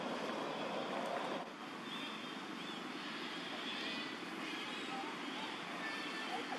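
Steady outdoor background noise, like wind or distant traffic, that dips slightly about a second and a half in, with a few faint high chirps in the middle.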